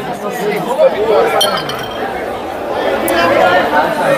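Pool balls clicking: the cue tip striking the cue ball and balls knocking together on a sinuca table, a few sharp clicks, over steady crowd chatter.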